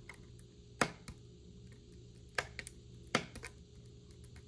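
Cardstock and a clear acetate strip being handled and pressed together by hand: a few sharp crackling clicks, three of them standing out, with fainter ticks between.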